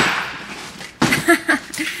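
Mallet blows on a locked jewelry box, forcing it open: a loud hit at the start that fades out, then a quick cluster of sharp knocks and rattles about a second in.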